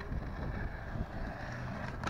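Low steady rumble with a few faint rustles and clicks, about a second in and near the end, as a plastic poly mailer is handled and cut open.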